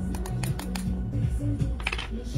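Small rhinestones clicking and rattling into a ridged plastic rhinestone tray, an uneven scatter of light ticks, over background music.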